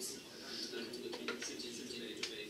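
A man talking over a video call, his voice played through the room's loudspeakers.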